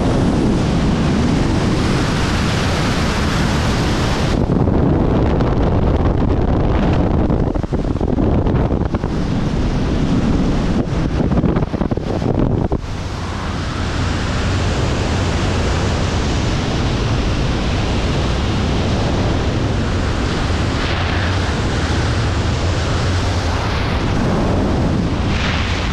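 Freefall airflow blasting over an action camera's microphone during wingsuit flight: a loud, steady wind roar. About four seconds in the hiss turns duller, and it brightens again about halfway through.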